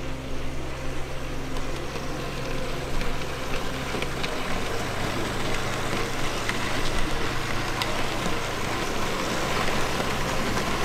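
OO gauge model trains, among them a Hornby Terrier tank engine, running on the track: a steady rumble and whirr of wheels and motors, with a few sharp clicks.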